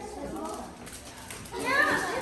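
Indistinct chatter of children and adults, with a child's high voice rising loudly near the end.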